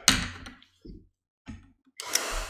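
A single sharp knock right at the start, dying away within half a second, then two faint low thuds and silence.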